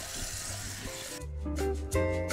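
Tap water running into a bowl while noodles are rinsed by hand, a steady hiss; about a second in, background music with distinct plucked notes comes in and takes over.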